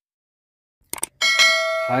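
Subscribe-button animation sound effect: a quick double mouse click about a second in, then a bright notification bell chime that keeps ringing.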